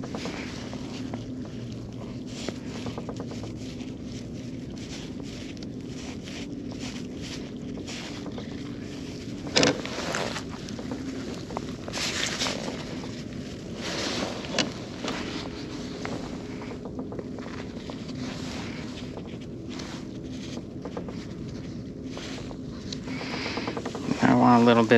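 Handling noise from fishing tackle as a rig with a two-ounce sinker is tied in a kayak: a few short clicks and knocks over a steady low hum.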